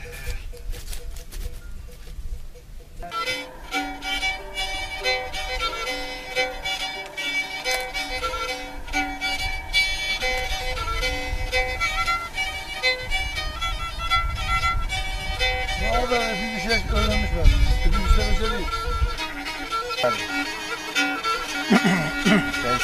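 Black Sea kemençe being bowed, playing a lively folk tune that starts about three seconds in. A man's voice comes in over the playing from about two thirds of the way through.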